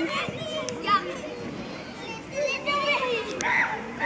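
Young children shouting and calling out while playing a running game of tag, several high voices overlapping.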